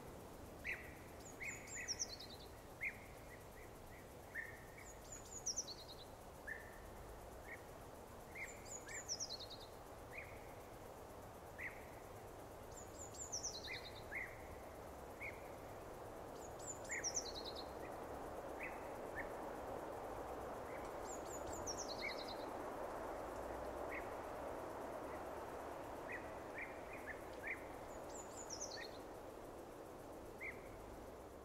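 Birdsong: a small bird repeats a short, high, descending phrase every few seconds, with scattered short chirps between, over a soft steady background hiss that swells a little in the middle.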